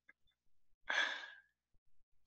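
One short breathy exhale through a headset microphone, a sigh or soft breath of amusement, about a second in and fading out over half a second.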